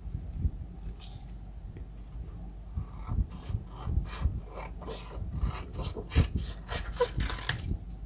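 Sheets of drawing paper being handled and rustled, then scissors cutting through the paper in a run of short, irregular snips over the second half.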